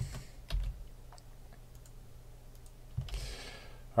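A few scattered clicks and taps of a computer mouse and keyboard, with a short soft rustle about three seconds in.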